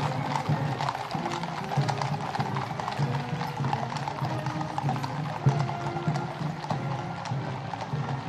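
Hooves of many cavalry horses clip-clopping on the tarmac road as a mounted column walks past, with band music playing in the background.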